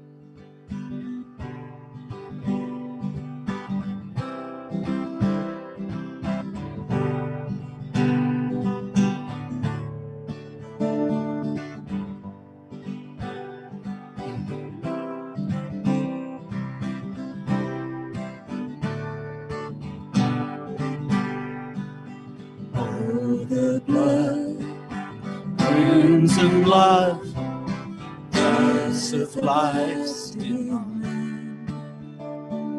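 Acoustic guitar strummed and picked at a slow tempo as a worship-song accompaniment. A voice starts singing over it about three-quarters of the way through.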